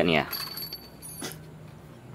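A brief spoken word, then a single faint metallic click about a second in, from handling at the exposed camshaft gears of the engine.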